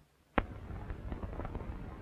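Old optical film soundtrack: near silence broken by one sharp pop about half a second in, at a splice where the scene changes, then steady soundtrack hiss with faint crackles.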